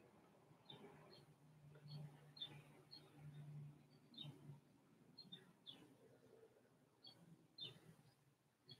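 Near silence: room tone with faint, scattered bird chirps, short high notes dropping in pitch, a dozen or so at irregular intervals.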